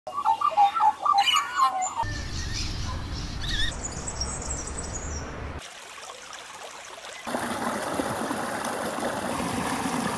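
Birds calling and warbling for the first two seconds, then a low rumble with high chirps, and after a brief quieter stretch, a steady rush of water pouring over rocks in a small creek cascade.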